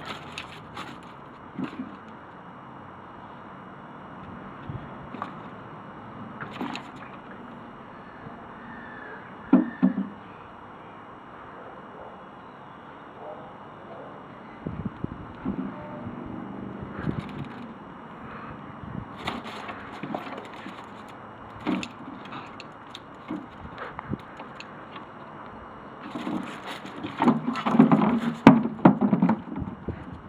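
Intermittent knocks and scuffs from a garden swingball set and a dog playing on paving slabs. There is a sharp knock about ten seconds in, and a louder run of knocking and plastic handling near the end.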